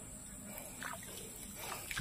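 Quiet outdoor ambience with faint, brief sounds about a second in and near the end; no clear source stands out.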